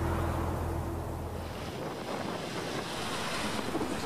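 The song's last sustained chord fades out in the first second and a half, giving way to a steady rush of wind and ocean surf.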